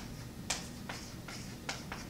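A run of short, sharp clicks, evenly spaced at a little over two a second.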